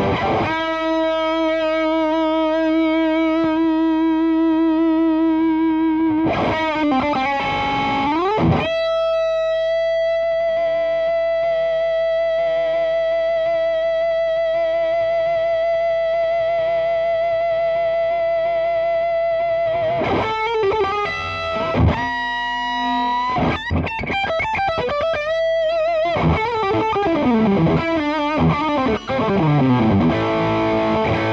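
Gibson 2017 Les Paul Faded T electric guitar played through the overdrive channel of a Fender Supersonic 22 amp: a distorted lead line of long sustained notes shaken with vibrato, one held for about ten seconds, broken by fast runs, the last one falling in pitch.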